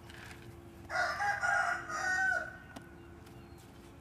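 A rooster crowing once, starting about a second in and lasting about a second and a half.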